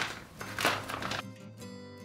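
Clear plastic bag crinkling twice in the first second as it is handled, over soft background music that carries on alone after that with steady held notes.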